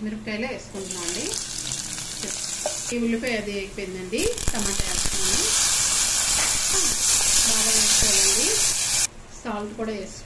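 Chopped onions, green chillies and tomatoes hitting hot tempering oil in a steel pot and sizzling. There are two spells of loud sizzling, the second louder and longer, and it cuts off suddenly near the end.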